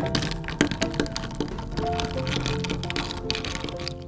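A metal bar spoon stirring ice cubes in a glass of fizzy ginger ale: ice clinking and crackling in a run of sharp clicks, over background music.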